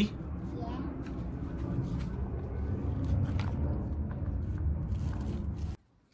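A brush scrubbing a nitro RC car's foam air filter in a plastic bowl, soft scrubbing with a few light taps, over a steady low rumble. The sound cuts off abruptly just before the end.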